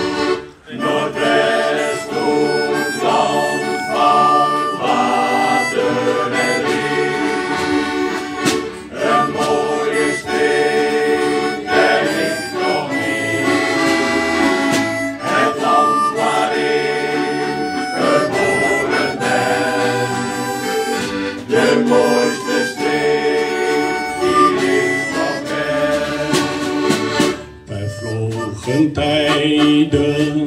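Instrumental shanty music with no singing: a harmonica and a tin whistle carry the melody over an accompaniment, pausing briefly about half a second in and again near the end.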